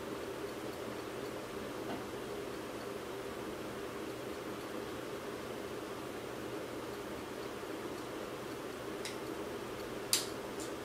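Steady low hiss of room tone, with two faint small metal clicks, one about two seconds in and one near the end, as needle-nose pliers twist a spring-wire corkscrew bait retainer over the eye of a fishing hook.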